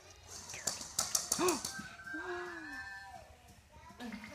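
A sharp breathy gasp about a second and a half in, followed by short exclaimed vocal sounds of surprise.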